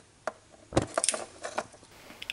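A few small knocks and clicks from a homemade aluminium beer-can alcohol stove being handled and set down on a workbench, the loudest a dull thump just before the middle.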